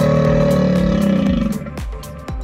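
A deep animal roar, played as the crocodile's call, held for about a second and a half and sinking in pitch as it fades, over background music with a steady beat.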